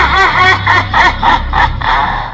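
A cartoon character's high-pitched, rapid laughter, a string of short ha-ha syllables at about four to five a second, over a low pulsing drone.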